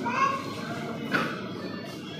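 Overlapping voices of a crowd in a packed room, with a small child's high voice calling out twice, once at the start and once about a second in.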